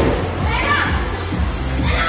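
Children playing and calling out over background music.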